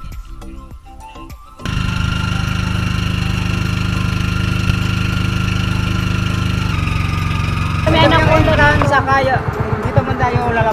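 Background music, then from about two seconds in the loud, steady, rapidly pulsing run of the outrigger boat's engine, with voices over it near the end.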